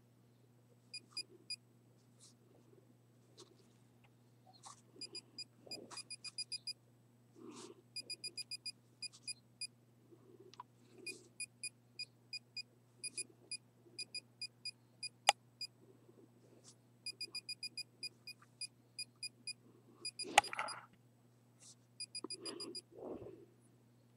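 Handheld RF meter beeping faintly in short rapid runs of high-pitched beeps, separated by brief gaps: its audible alert that it is picking up a radio-frequency field, with the display reading 30–40 V/m. Handling rustle runs through it, with a sharp click about fifteen seconds in and a louder rustle near twenty seconds.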